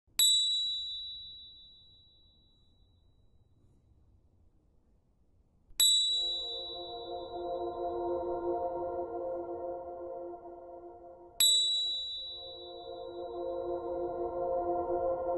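Ambient music: a high bell-like chime struck three times, about five and a half seconds apart, each ringing out and fading. A sustained chord of lower tones comes in with the second strike and holds.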